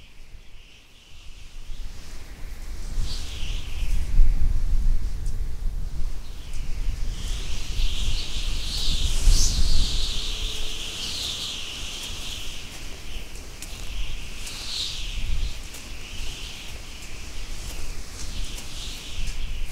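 Outdoor winter ambience: a steady low wind rumble, with birds chirping high and busily over it from about three seconds in.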